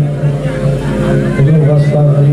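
Male qawwali singer's voice, bending and held notes, over a sustained low accompanying tone that drops out and comes back about a second and a half in.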